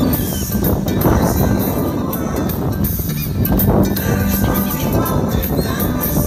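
Music with a steady beat playing loudly from a portable Bluetooth speaker in the open air.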